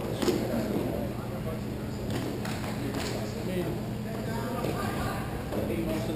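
Hockey play on a plastic sport-court floor: a few sharp clacks of sticks and puck, with players' voices calling out.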